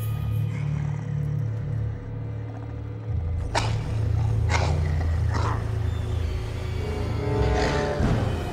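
Tense horror film score built on a deep, steady low drone. From about three and a half seconds in, a few short harsh rasping hits come roughly once a second over it.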